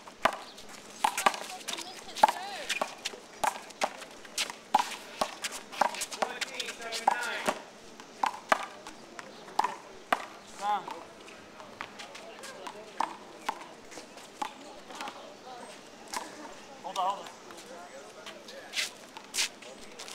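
A one-wall handball rally: the small rubber ball slapping off bare hands, the concrete wall and the asphalt in a run of sharp smacks, about one a second.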